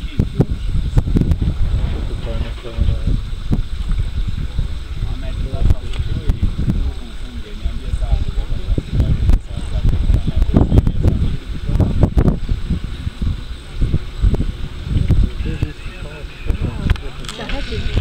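Wind buffeting the microphone in uneven gusts, with low, indistinct voices mixed in.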